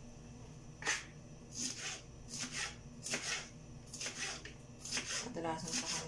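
Kitchen knife slicing a green vegetable on a plastic cutting board: a series of short, irregular cutting strokes, about one or two a second.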